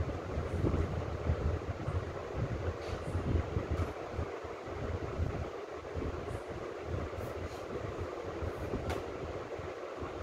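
Steady background rumble and hiss with no speech, the low rumble rising and falling unevenly throughout.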